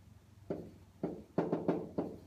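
Pen tapping against an interactive whiteboard's hard surface as handwriting strokes go down: about four sharp knocks, each with a short ringing tail, over a faint steady hum.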